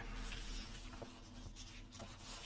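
Quiet room tone: a faint steady low electrical hum under light hiss, with one small tick about a second in.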